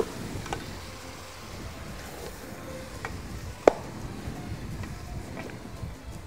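Meat being stirred with a wooden spoon in a steel pot over a gas burner: a low steady hiss of cooking, with a few light clicks and one sharp knock of the spoon against the pot about three and a half seconds in.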